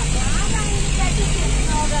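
Steady engine and road rumble inside a moving minibus on a rough road, with passengers' voices over it.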